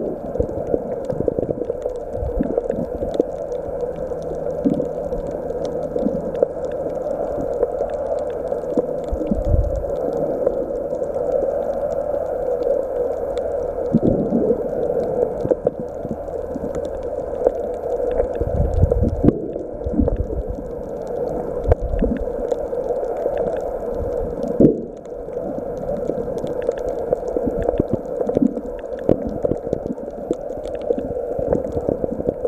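Muffled underwater sound picked up by a camera in a waterproof housing: a steady dull rush of water with irregular low thumps and knocks.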